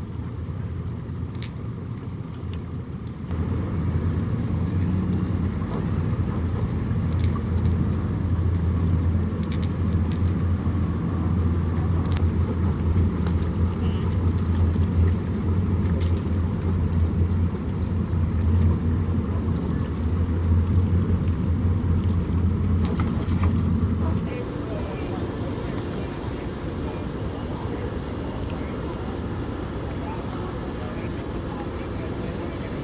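A boat engine idling, a steady low hum that comes in a few seconds in and drops away about twenty-four seconds in, over faint background voices.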